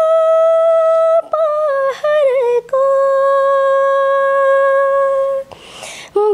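A woman's solo voice singing without accompaniment in long sustained notes: a held note, a wavering run that slides downward, then a longer held lower note, with a breath near the end.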